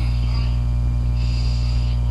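Loud, steady electrical mains hum, unchanging throughout.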